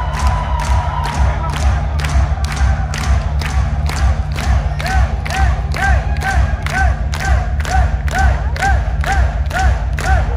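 Heavy metal band playing live through a loud PA: a steady drum beat at about two hits a second under distorted guitars and bass, with a repeating rise-and-fall melodic figure coming in about halfway through, over a cheering crowd.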